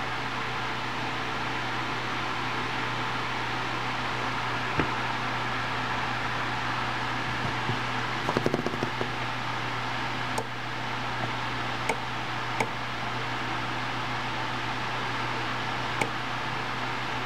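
Steady background hum with a few light clicks, single and in a short run about halfway through, from the push buttons of a digital barometer being pressed.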